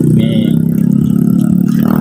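Motorcycle engine running steadily with a low drone, its pitch stepping up slightly at the start.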